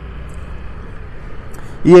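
Steady low rumble of a vehicle on the move, with road and wind noise, in a pause between spoken words; a man's voice starts again near the end.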